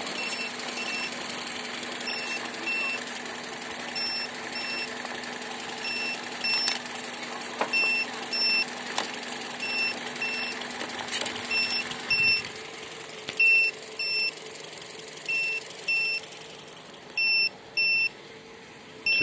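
Baseus Super Energy car jump starter beeping, pairs of short high-pitched beeps about every two seconds, an alert the owner cannot explain. Underneath, a 2-litre petrol engine idles steadily until about two-thirds of the way through.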